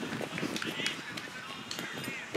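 Faint, indistinct voices of people around an open-air cricket ground, with a few short high chirps.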